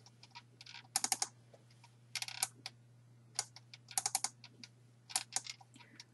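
Clicking at a computer, in five short bursts of quick clicks about a second apart, over a faint steady low hum.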